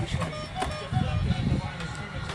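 Electronic music playing from a toy ride-on car's steering wheel, set off by a toddler pressing its buttons, with a series of short pitched notes in the first second.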